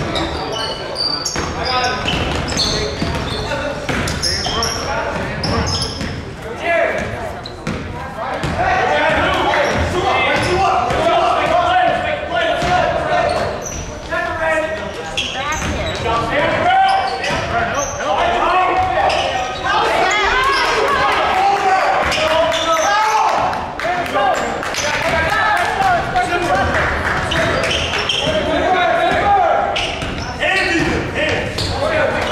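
Basketball game in a school gym: a ball bouncing on the hardwood floor and sneakers squeaking, under players and people on the benches calling out. All of it echoes in the large hall, and the voices grow louder about nine seconds in.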